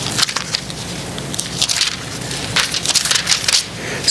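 Pages rustling and being handled close to a lectern microphone: an uneven run of crisp crackles and scrapes over a steady low hum.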